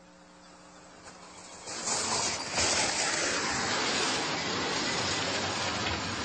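A heavy truck passing by on the road: a rushing noise that swells up about two seconds in and stays loud.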